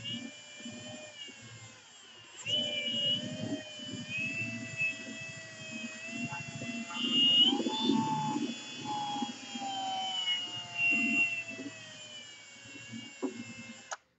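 Milwaukee cordless drill spinning a polishing ball against freshly painted steel, buffing it. The motor whine drifts slowly in pitch, rising about halfway through and easing off after, over the rubbing of the pad on the paint. It stops right at the end.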